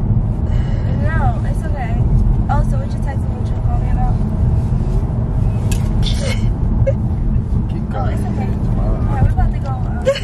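Steady low rumble of road and engine noise inside a moving car, with quiet, indistinct voices over it.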